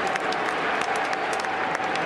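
Large stadium crowd applauding under a dome roof: a steady wash of clapping with many sharp single claps standing out.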